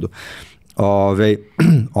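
A man's speech: a short throat-clear at the start, then talking in two short phrases.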